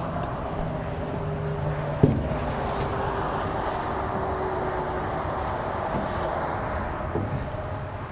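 Steady low hum and rumble of a motor vehicle running. About two seconds in comes a single sharp knock, a footstep on the aluminium trailer.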